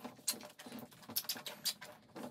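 A knife working at a soft rubber duck bath squirter: an irregular run of small clicks, scrapes and crackles as the blade meets and scratches the toy.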